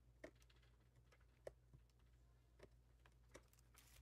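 Near silence, with a handful of faint, scattered clicks and taps from a paper sticker sheet and a small pointed craft tool being handled on a tabletop.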